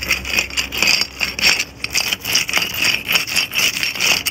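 A wheeled mortar-joint raker dragging its nail through the mortar joints between clay bricks, its small wheels rolling along the brick face: a continuous scrape that rises and falls with the strokes.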